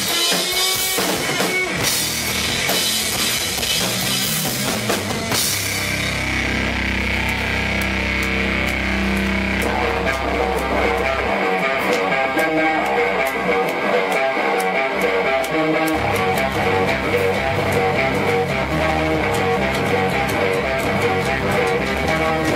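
Live instrumental rock played on electric guitar, bass guitar and drum kit. Cymbal-heavy drumming fills the first five seconds. The drums then thin out while long low notes are held, and about twelve seconds in a repeating riff starts with regular drum hits.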